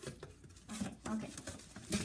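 Paper and packaging rustling and shifting in a shipping box as it is unpacked by hand, in short irregular handling noises.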